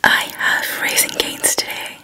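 A woman whispering close to the microphone.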